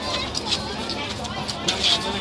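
Several people talking around the recorder, voices overlapping in a general chatter, with a couple of short sharp hissy sounds, about half a second in and near the end.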